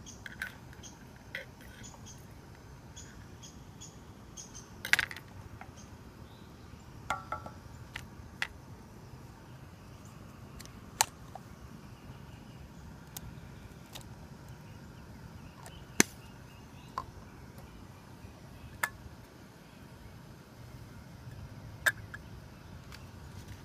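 Scattered sharp clicks and knocks of camp cooking gear being handled: a wooden spoon against a steel canteen cup, a plastic container lid being taken off, vegetables going into the cup and a can being picked up, over a steady low background.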